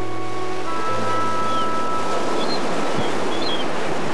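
Ocean surf breaking in a steady wash of noise, under sustained held notes of background music that stop about three seconds in.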